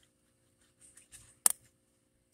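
Faint rustling of eggplant leaves, then one sharp snap about one and a half seconds in as a fruit is picked off the plant.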